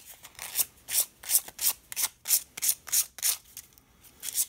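Sandpaper rubbed back and forth over a brass pen tube in quick, short strokes, about three a second, scuffing the metal so the epoxy can grip.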